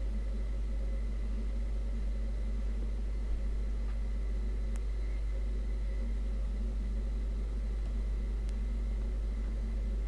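A steady electrical hum with a faint hiss: a deep low drone with several constant higher tones over it, the kind of background noise a computer and its recording setup give off. A few faint clicks come through about halfway and again near the end.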